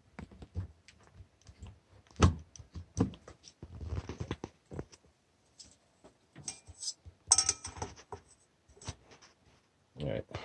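Irregular clicks, knocks and rustles of equipment being handled, with a louder knock about two seconds in and a short metallic clatter with a faint ring about seven seconds in.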